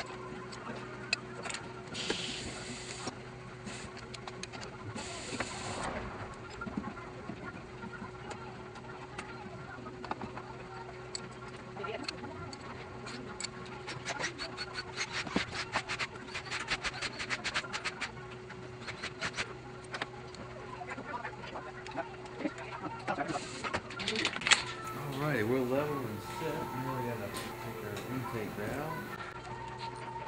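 Clicks, taps and light metal knocks from the cylinder head and its tilting fixture being slid over and levelled on a valve-seat cutting machine, over a steady machine hum. A voice mutters near the end.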